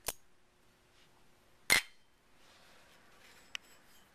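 Small steel gun parts clinking against a metal parts dish: a light clink at the start, a louder, ringing clink nearly two seconds in, and a faint tick near the end.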